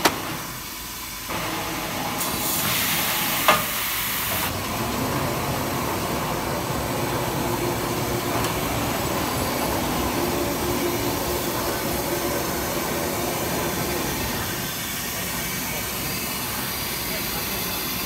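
Tissue paper rewinding machine running steadily, rollers and drives making a continuous machine noise. A burst of hissing comes in about two seconds in and lasts a couple of seconds, with a sharp click in the middle of it.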